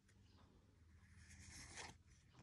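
Near silence, then a faint rustle about halfway through as trading cards are slid past one another in the hand.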